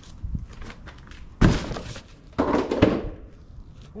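Cardboard boxes and a plastic Christmas tree stand being handled and set down on a table: a thunk about a second and a half in, then a second, longer clatter of cardboard a second later.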